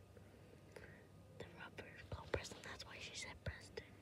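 A person whispering quietly for the second half or so, with a few small clicks among the whispers.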